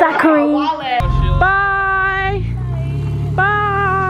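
Music and laughing voices, cut off about a second in by a car's engine running low as the car drives off. Twice over the engine comes a long, steady held note of about a second.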